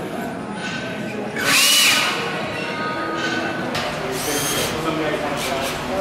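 Two short bursts of a small electric motor whirring, its pitch rising and then holding: one about a second and a half in, another about four seconds in. Voices chatter in a large, echoing room behind them.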